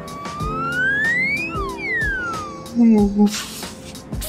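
A comic whistle sound effect sliding up in pitch for about a second and a half, then sliding back down, laid over light background music to mark a yawn. Near the end comes a short voiced yawn sound and a breathy exhale.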